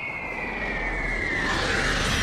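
Animation sound effect of objects plunging from the sky: a whistle gliding steadily downward in pitch over a low rumble, with a rushing noise building near the end.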